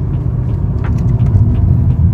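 BMW E36's 3.0-litre M52B30 stroker straight-six running while driving, heard inside the cabin as a steady low rumble mixed with road noise.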